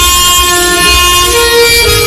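Alto saxophone playing a ballad melody, holding one long note and moving to a higher note about a second and a half in.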